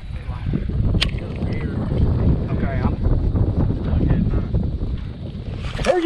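Wind buffeting an open-air camera microphone, a steady low rumble, with a single sharp click about a second in.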